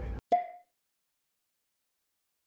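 Steady train-cabin noise cuts off abruptly. A single short pitched pop follows, a click with a brief ringing tone that dies away fast, then dead silence: an editing sound effect at a cut to a title card.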